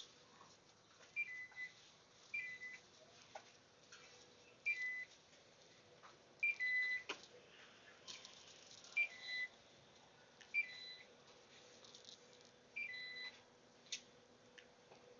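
Electronic checkout beeps, about seven of them, each a quick two-note blip that steps down in pitch, coming at uneven intervals of one to two seconds, with a few faint clicks between.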